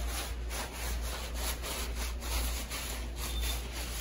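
Paper towel being scrubbed back and forth under a shoe on a hard laminate floor, wiping up spilled food: a steady run of repeated rubbing strokes.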